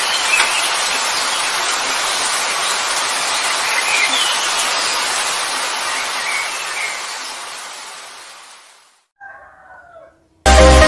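Steady rain hiss that fades away over the last few seconds, followed near the end by a rooster crowing once briefly.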